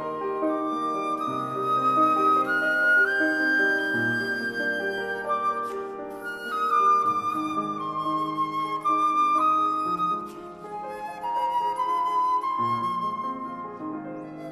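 An eight-keyed simple-system (nach-Meyer) wooden flute of about 1880 playing a melody in long notes over piano accompaniment on an 1866 Blüthner grand. The flute line climbs to a long held high note a few seconds in, falls away, then climbs again near the end.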